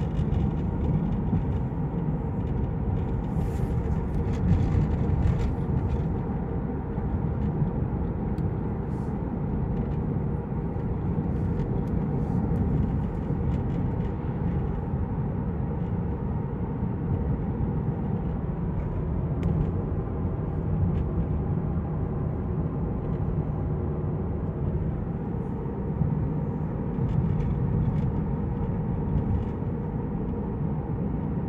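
Kia car driving at a steady pace, heard from inside the cabin: a continuous engine hum mixed with tyre and road rumble, holding steady with no sharp changes.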